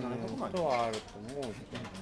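A person's voice making drawn-out syllables that rise and fall in pitch, such as a thinking 'uun' or 'ee'. The voice is loudest in the first second and a half.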